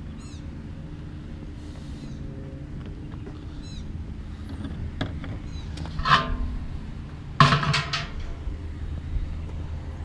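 A steady low engine-like hum runs throughout, with a few faint high chirps. About six seconds in comes a brief ringing metallic tap as a tall brass vase is handled, and a louder short sound follows a second and a half later.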